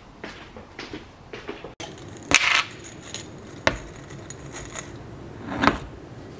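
Supplement capsules rattling in a small bottle, followed by a few sharp clicks as the bottle and its cap are handled and set on a wooden board. The rattle, about two seconds in, is the loudest sound.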